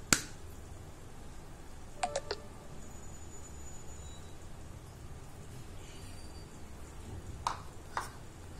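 Sharp taps as fingers jab at oobleck (cornstarch and water) in a plastic bowl: a loud one at the very start, a quick run of three or four about two seconds in, and another near the end, over a low steady room noise.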